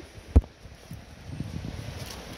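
Handling noise on a phone microphone: one sharp bump about a third of a second in, then a faint, uneven low rumble as the phone is swung down toward the water.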